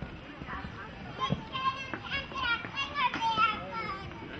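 Children's voices calling out in a run of short, high-pitched calls starting about a second in, with a single thump a little after the first call.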